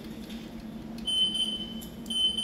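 Electronic timer beeping a single steady high tone in long pulses of about a second each, starting about a second in, which marks the end of the class's think time.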